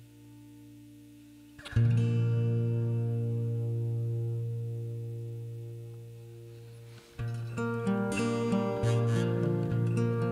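Acoustic guitar: a single chord struck about two seconds in rings out and slowly fades, then a few seconds later the guitar starts playing on, with a run of changing chords and notes.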